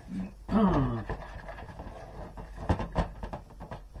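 A person's short voiced sound with a falling pitch, about half a second in, then a run of light clicks and knocks from kitchenware being handled.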